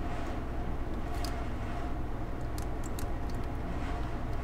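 Steady low background hum with a few faint, short clicks scattered through, from a computer keyboard and mouse as shortcut keys are pressed.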